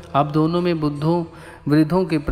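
A man's voice speaking in Hindi in long, held syllables, in two phrases with a short pause between them.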